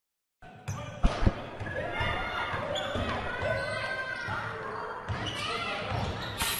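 A basketball bouncing on a court, with two sharp bounces about a second in and a few softer ones later, over indistinct voices and shouting in the background.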